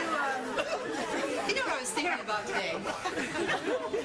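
Several voices talking over one another at once, a tangle of chatter with no single clear line of words.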